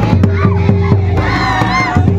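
Folk dance music with a quick, steady drumbeat of about four beats a second, and a crowd of dancers shouting and whooping over it. High calls rise and fall in the second half.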